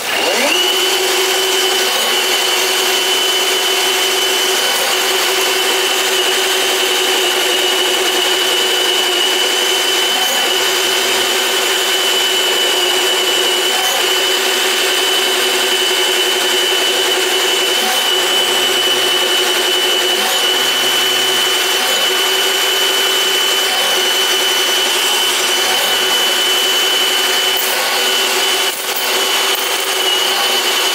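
Milwaukee sectional drain machine running, spinning 5/8-inch cable down a floor drain, with a steady high whine over the motor's hum. It starts at once and runs evenly, dipping briefly near the end.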